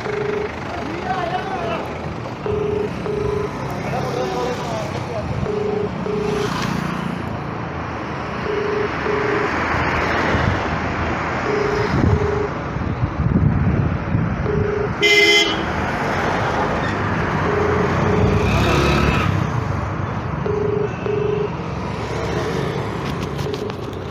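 Telephone ringback tone playing through a mobile phone's speaker: a double beep repeating about every three seconds while the call rings unanswered. Street traffic noise runs underneath, and a vehicle horn sounds briefly about fifteen seconds in.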